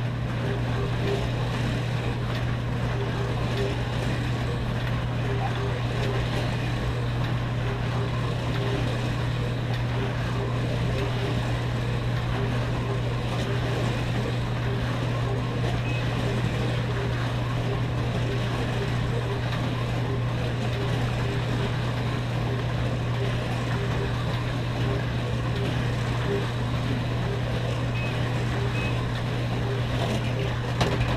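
Midget slot cars running continuously around a multi-lane track: a steady whirring buzz of their small electric motors and the rattle of the cars in the slots, over a constant low hum.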